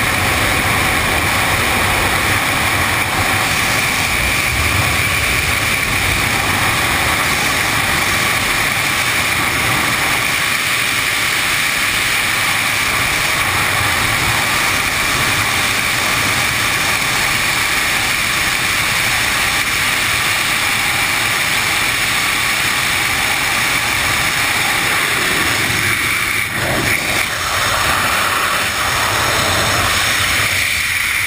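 Steady, loud rush of freefall wind buffeting a helmet-mounted action camera's microphone, with a brief dip in the rush near the end.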